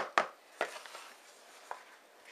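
A few sharp knocks of a wooden spoon against a plastic mixing bowl and cup, mostly in the first second, then one faint click.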